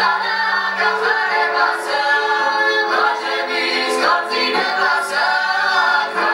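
Several voices singing a Georgian folk song in harmony, with a woman's voice leading and no clear instrumental backing.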